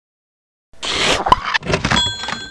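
Cartoon sound effects: after a short silence, a loud hissing whoosh, then a quick run of clicks and rattles.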